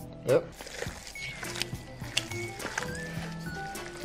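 Soft background music with held notes that change pitch every so often.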